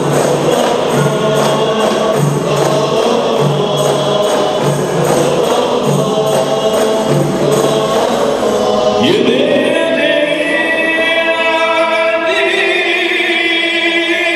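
A rebana frame-drum ensemble plays a steady beat under male group singing in qasidah style. About nine seconds in, the drums stop and a lone voice slides up into an unaccompanied sung line, and the group joins again near the end.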